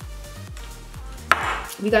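A single sharp knock about a second and a half in, as a glass of iced drink is set down on the table, over faint background music with a steady beat.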